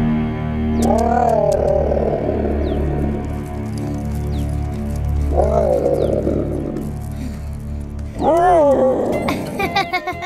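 Cartoon cat's voice calling three times, each call rising then falling in pitch, the last one the loudest, over steady background music.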